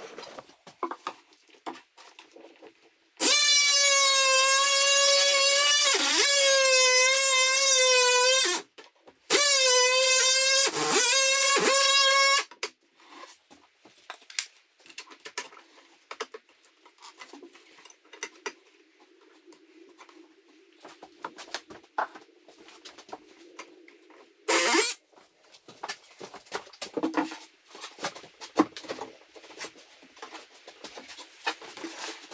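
Oscillating multi-tool cutting into an electrical outlet cover plate: two runs of a loud, steady buzzing whine, about five and three seconds long, then a brief burst near the end, with light knocks and handling between.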